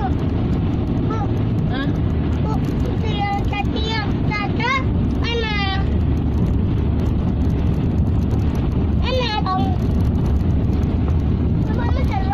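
Steady low road and engine rumble heard inside a moving car's cabin. A high-pitched voice calls out briefly a few seconds in and again past the middle.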